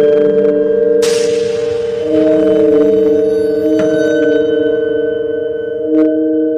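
Eerie background music of sustained, overlapping bell-like ringing tones, like a singing bowl drone. A shimmering hiss swells in about a second in and fades.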